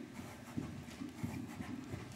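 Hoofbeats of a loose Welsh Cob trotting on the soft dirt footing of an indoor arena: a few dull, irregular thuds.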